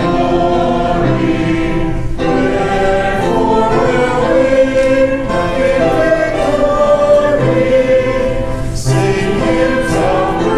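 Church choir and congregation singing a hymn together in long held notes.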